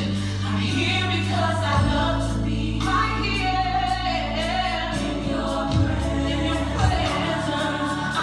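Gospel song playing: choir voices singing over steady low accompaniment.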